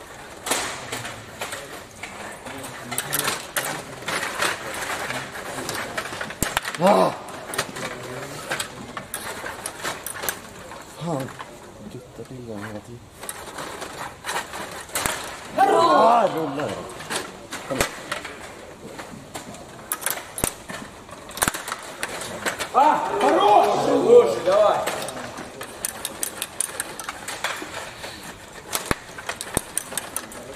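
Stiga Play Off table hockey game in play: a fast, irregular run of clicks and clacks from the rods being pushed and twisted, the plastic players striking the puck, and the puck knocking against the boards. Voices call out briefly about 7 seconds in, again about 16 seconds in, and for a couple of seconds around 23 seconds in.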